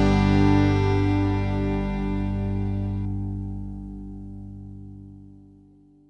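A country band's final chord ringing out on guitars and bass after the last strike, held and slowly fading away to nothing near the end.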